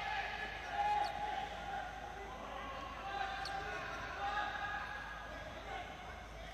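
Indoor futsal match sound echoing in a sports hall: faint ball kicks and players' shouts on the court.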